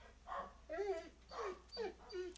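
A dog whining softly in the background, four or five short whimpers that bend up and down in pitch.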